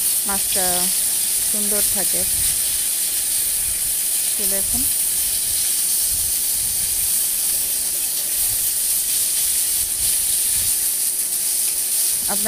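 Climbing perch (koi fish) pieces frying in hot oil in an aluminium karai, giving a steady sizzle that runs without a break.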